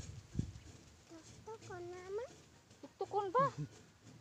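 A farm animal calling twice: a drawn-out call around the middle and a shorter, louder 'bah' near the end. A soft low thump comes about half a second in.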